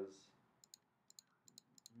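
A quick run of about a dozen faint, sharp computer mouse clicks, some in close pairs, as a button is clicked repeatedly.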